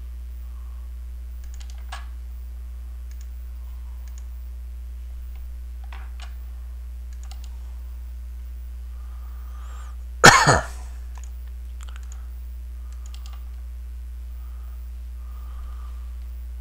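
Faint, scattered computer mouse clicks over a steady low electrical hum, with one brief loud cough about ten seconds in.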